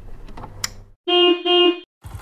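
Countdown sound effects: mechanical clicking over a low hum, then about a second in two short beeps in quick succession, followed by a brief silence.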